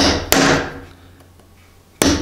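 Hammer striking a steel nail set twice in quick succession, about a third of a second apart, driving a protruding nail down into the wooden top boards of a cable spool; the sound dies away within about a second.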